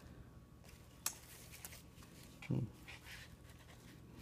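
Faint handling sounds of paper and cardboard as items are lifted out of a box packed with shredded paper filler. There is a sharp click about a second in and a short low sound about two and a half seconds in.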